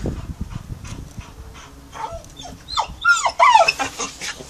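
Pitbull giving a quick run of high, arching whines in the second half, eager to leap for a toy hanging above it. A few faint clicks come before.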